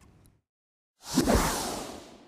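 A whoosh sound effect with a deep low boom from a TV programme's logo sting. It comes in suddenly about a second in, after a moment of silence, and dies away over about a second.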